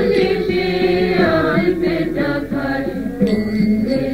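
Kirtan: devotional chanting sung to a melody, over a steady held tone underneath.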